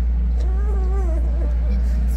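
A loud, steady low hum, with a short wavering voice-like call lasting under a second near the middle.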